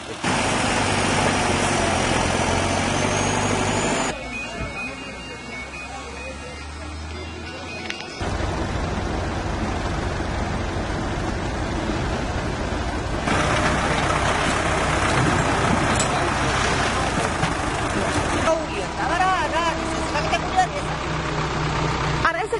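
Diesel engines of an excavator and a backhoe loader running, with sudden changes in the engine sound a few times as the shots cut. People start talking near the end.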